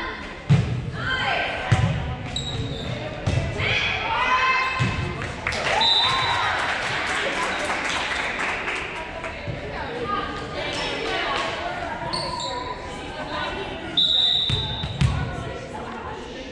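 Volleyball being struck with thumps that echo in a large gym, twice near the start and twice near the end, with players and spectators shouting and cheering in between.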